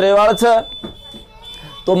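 A man speaking briefly, then a pause in which a faint, steady, high-pitched tone is heard, with a short break in it, before speech resumes at the end.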